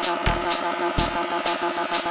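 Electronic dance music with a steady beat: a repeating synth pattern under a sharp clap-like hit about twice a second, with two deep bass hits in the first second.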